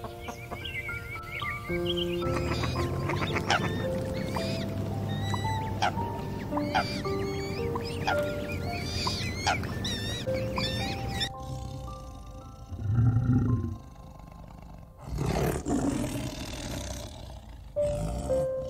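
Background music with chirping bird calls over it. About eleven seconds in the music drops out and a tiger growls twice: a short low growl, then a longer one about two seconds later.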